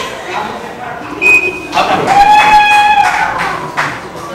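People's voices in a large hall. About two seconds in, one loud voice holds a single high, steady note for just over a second.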